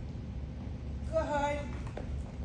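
Steady low hum of room noise, with one short spoken word a little over a second in and a faint tap just before the end.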